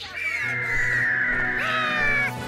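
Cartoon pterodactyl cry: one long, raspy, caw-like call that falls slowly in pitch, over music that comes in about half a second in.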